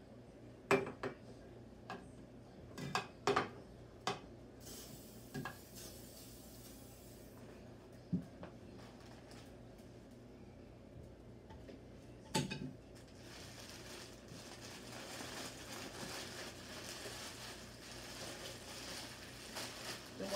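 Tools and objects knocked and set down on a wooden worktable while clay is handled: a string of sharp clacks and knocks, with a short hiss a few seconds in and a rustling that builds over the last several seconds.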